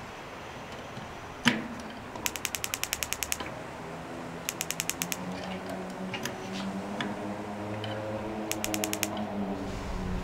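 Electronic spark igniter of a propane fire table ticking in three quick runs, about ten sparks a second, with the burner not catching. One single sharp click comes about a second and a half in, and a faint low hum rises slowly in pitch under the later ticking.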